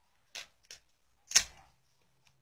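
Three short, sharp crackling snaps as hands pull at a lifelike baby doll's diaper and clothes to undress it. The third, about one and a half seconds in, is much the loudest and trails off briefly.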